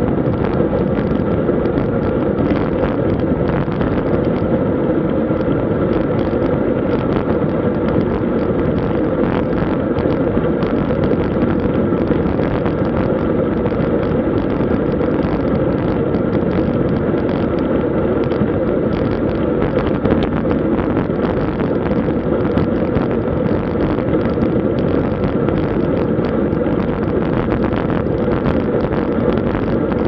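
Steady wind rushing over the camera microphone of a road bike at about 35 km/h, a loud even noise with no let-up.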